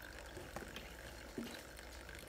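Faint handling sounds: a few light clicks and small water movements as a lit LED headlight bulb is pushed down under the water in a bowl.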